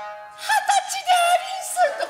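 A high, sing-song voice with a wavering pitch and a few quick swoops, heard as stylised kabuki vocal delivery.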